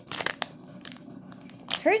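A few short rustles of a clear plastic bag being handled in the first half second, then a quiet stretch.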